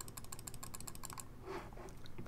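Rapid clicking at a computer, about a dozen small clicks a second, stepping through moves of a game record; the clicks stop a little over a second in. A brief soft vocal sound follows near the end.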